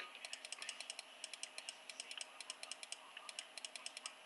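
Light plastic clicks from a computer mouse's scroll wheel, coming in quick runs of several even clicks with short pauses between, as a long list is scrolled.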